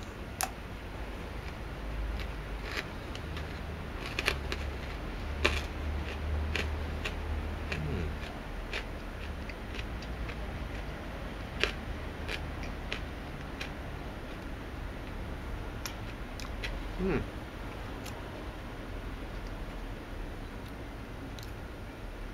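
Quiet chewing of a Violet Crumble honeycomb chocolate bar: scattered faint crunching clicks over a low steady background rumble, with a short hummed "hmm" late on.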